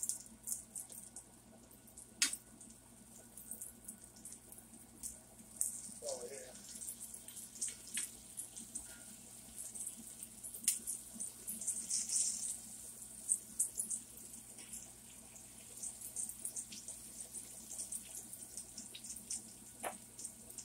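Egg-battered eggplant frying in a cast iron skillet: a faint sizzle with scattered crackles of hot oil. Now and then the metal tongs click sharply against the pan as the slices are turned.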